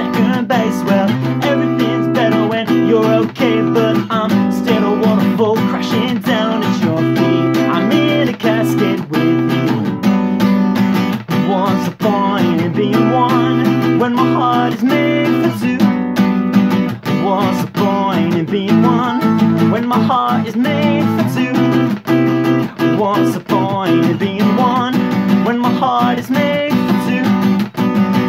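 Acoustic guitar strummed steadily, with a man singing along over it.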